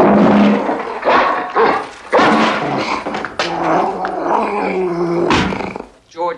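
A dog growling and barking in a run of loud, rough bursts.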